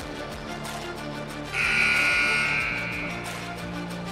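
A basketball gym's scoreboard buzzer sounds once, about one and a half seconds in: a loud, high buzz that starts suddenly, holds for about a second and then fades. Steady background music plays throughout.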